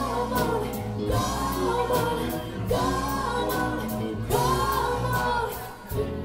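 A live band playing with sung vocals over electric guitars, bass and drums. The sung phrases arch up and fall back, one roughly every second and a half, with drum hits cutting through.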